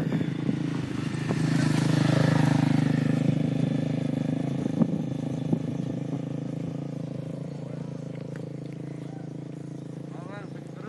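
A small motorcycle engine running as it passes, growing louder to a peak about two seconds in and then slowly fading away. Two short clicks come around five seconds in.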